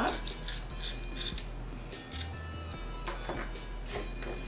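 Lip liner pencil being twisted in a small handheld sharpener: short scraping strokes, mostly in the first second and a half, with a couple more after three seconds, over background music.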